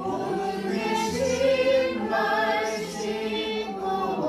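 A Korean Christian worship song: a woman singing long, held notes with other voices joining in chorus over backing music.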